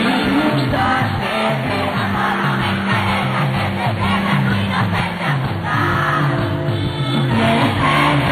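Live band playing at full volume with a stepping bass line, while a crowd's voices cheer and yell along with the music.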